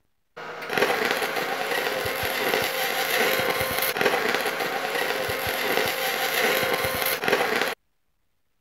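MIG welding arc on aluminum from a Miller Spoolmate 150 spool gun: a steady crackling buzz, with scattered pops, for about seven seconds. It starts just after the beginning and stops abruptly near the end.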